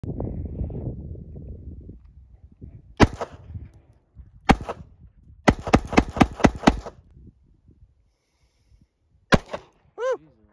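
Bersa .380 ACP semi-automatic pistol firing, loud: a single shot about three seconds in, another a second and a half later, then a rapid string of about seven shots, and one last shot near the end.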